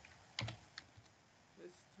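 A few faint computer keyboard keystrokes as code is typed, the clicks falling about half a second and one second in.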